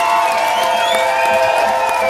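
Live rock band holding a sustained chord, with the audience cheering and whooping over it.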